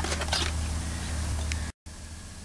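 Handling of a fabric filter bag and its plastic frame: faint rustling with a few light clicks over a steady low rumble. The sound cuts out abruptly near the end.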